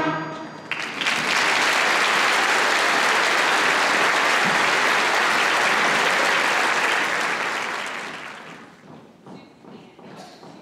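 Audience applauding after a school band's piece ends. The band's last chord dies away at the very start, the clapping starts about a second in, holds steady, and fades out over the last two or three seconds.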